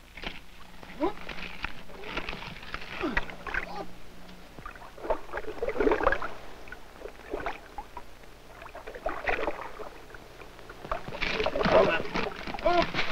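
Indistinct men's voices calling out in short bursts, with water sloshing and splashing as large fish are hauled out of a net over the side of a wooden boat. A faint steady hum runs underneath from the old optical film soundtrack.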